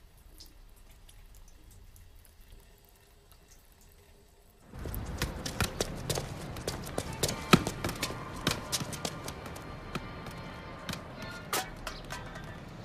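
Quiet room tone for the first few seconds. Then, after a cut about five seconds in, outdoor ambience with repeated sharp knocks of a football being kicked and bouncing on an asphalt pitch, with faint music underneath.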